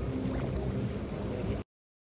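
Churning, splashing water with some wind on the microphone, cut off abruptly about a second and a half in.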